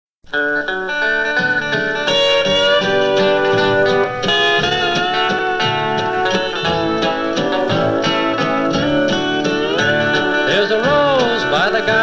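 Opening bars of a 1959 country-and-western record by a small band, played from a 45 rpm single. The music starts a moment in.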